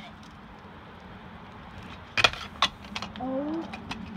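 Sharp metallic clacks and knocks of a stunt scooter striking hard ground, the loudest about halfway in and a few smaller ones following quickly after.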